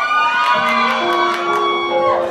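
Live band playing the instrumental opening of a Korean pop ballad in a concert hall, with a steady held note coming in about a second in, and the audience cheering faintly underneath.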